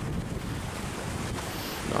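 Sea surf washing and breaking, with wind buffeting the microphone: a steady rush of noise.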